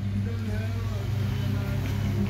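A person's voice over a steady low hum.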